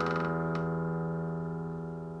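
The last strummed chord of an acoustic guitar song ringing out and slowly fading away, with a faint click about half a second in.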